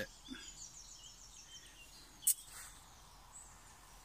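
Small songbird trilling, a high run of rapid repeated notes, against quiet woodland background. A little past halfway comes a single sharp click as a wire camping grill is handled.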